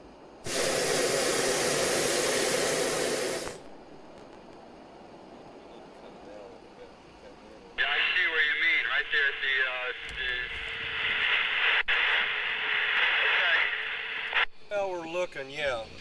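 Propane burner of a hot air balloon firing in one loud blast of about three seconds, heating the envelope to climb. Later a voice comes over a two-way radio for about seven seconds, sounding thin and narrow.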